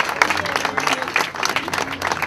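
A small crowd applauding, many hands clapping at once, with a few voices faintly under it.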